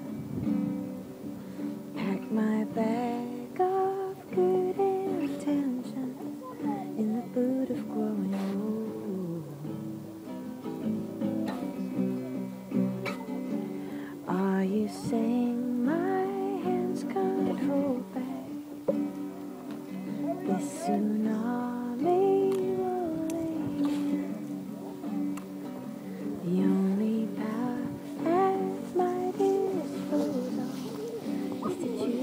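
A woman singing a slow melody over a strummed acoustic guitar, a live folk song performance.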